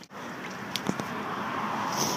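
Air hissing steadily out of a pressurised HCW camera water housing as a screw knob on its lid is undone, growing slowly louder, with a few small clicks of the knob and handling about a second in.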